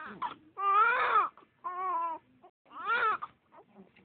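Newborn baby crying: three wavering, pitched wails with short breaks for breath between them.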